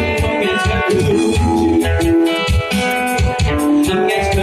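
Small live band playing: two strummed acoustic guitars over an electric bass guitar, with a steady rhythm of low strokes.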